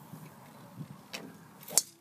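A golf ball rolling down a long pipe with faint ticks and knocks, then, near the end, one sharp crack of a golf club striking the ball as it comes out of the pipe.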